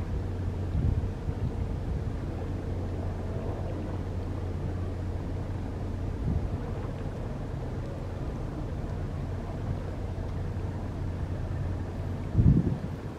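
Steady low drone of boat engines across open water, with a faint steady tone above it. Brief gusts of wind on the microphone about a second in and again around six seconds.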